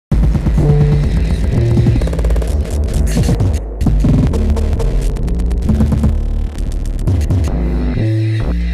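Loud, bass-heavy electronic music that starts abruptly: a low synth bass line stepping between notes every fraction of a second under layered droning tones. There are glitchy stuttering cuts around the middle.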